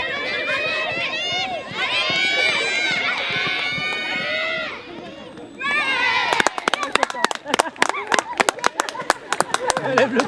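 A voice calling out loudly and at a high pitch, near the microphone, for the first five seconds. From about six seconds in come quick, uneven hand claps close by, several a second, with no steady beat.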